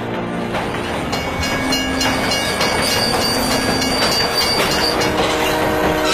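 Diesel-hauled train running along the track, the wheels clacking over the rail joints, with a thin high squeal, growing louder in the first second.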